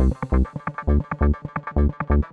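Techno track with a steady four-on-the-floor kick drum, a little over two beats a second, under quick repeating synth stabs.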